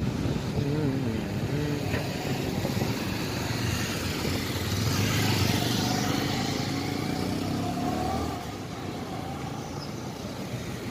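Road traffic going by: cars and small motorcycles passing close, loudest around the middle as the motorcycles go past, then easing off.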